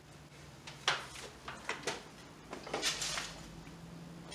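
Light knocks and rustling from handling at a wooden floor loom, with a louder clattery stretch about three seconds in, over a low steady hum.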